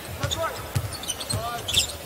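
Basketball being dribbled on a hardwood court: a run of dull thumps, about three a second.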